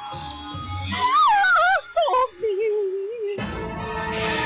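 Cartoon soundtrack: a warbling, wavering cry that wobbles up and down in pitch, then holds a lower wavering note. Background music with a steady beat comes in about three and a half seconds in.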